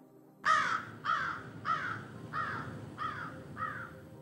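A crow cawing about six times in steady succession, each caw fainter than the last.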